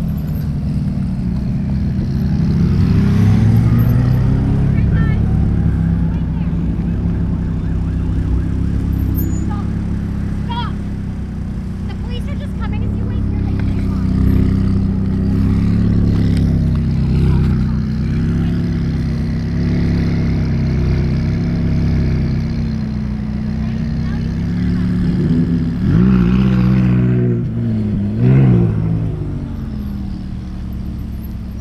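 Sports car engines running and revving as cars drive past one after another. The revs rise and fall a few seconds in and again twice near the end, where it is loudest.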